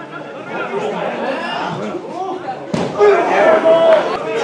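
Players and spectators calling and shouting across a football pitch, overlapping voices throughout. A single sharp thump comes about three quarters of the way in, followed by louder shouts and one long held call.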